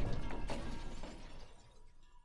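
Tail of a glass smash: broken shards scattering and tinkling, the sound fading steadily away.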